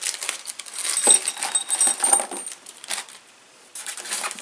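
Small steel bolts, screws and hex keys clinking together as they are tipped out of a plastic tool pouch, with light metallic ringing clinks, mostly in the first two-thirds.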